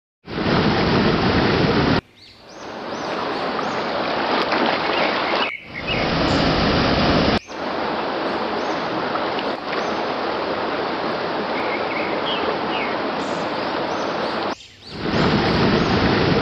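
A waterfall's rushing water, a steady dense noise. It is cut into several short clips, so the sound changes abruptly every few seconds, fuller and deeper in the close-ups of churning white water.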